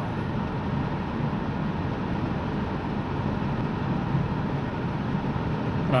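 Steady road noise from a car driving on a paved road, heard inside the cabin: engine and tyre rumble, strongest at the low end.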